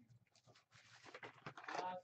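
Faint taps and rustles of a trading-card box and foil packs being handled, then a short wordless murmur of a man's voice near the end.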